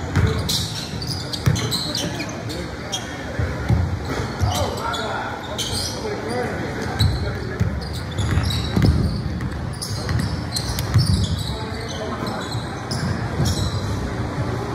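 Indoor basketball game in an echoing gym: the ball bouncing on the hardwood floor, short high squeaks scattered throughout, and players' and spectators' voices calling out.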